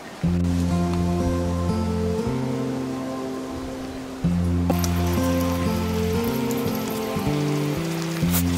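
Background music of sustained low notes that change chord every second or so. A steady hiss joins in about halfway through.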